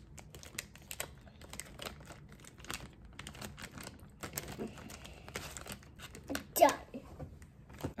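Fingertips pressing and spreading candy "seaweed" dough in the thin plastic mold tray of a Popin' Cookin' sushi candy kit: soft, irregular clicks and crinkles of plastic. A short vocal sound comes about two-thirds of the way in.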